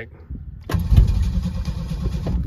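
Starter motor cranking the 1987 Ford Thunderbird Turbo Coupe's 2.3-litre turbocharged four-cylinder. It begins about a second in and turns the engine over without it catching: the car won't start.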